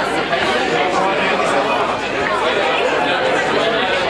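Crowd chatter: many guests talking at once at their tables, an even hum of overlapping conversation with no single voice standing out.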